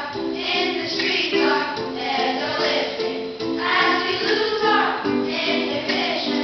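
A group of children singing a pop song together, with live band accompaniment.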